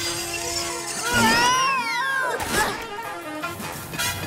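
Animated-series soundtrack music with cartoon sound effects: about a second in, a pitched effect glides up and then back down over about a second, followed by a few short knocks.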